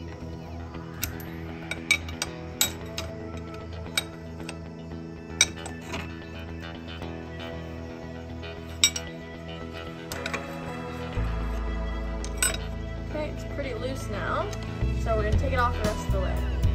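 Background music, its bass coming in louder about eleven seconds in, over several sharp metallic clinks of a wrench and locking pliers on a fitting while a bolt is loosened.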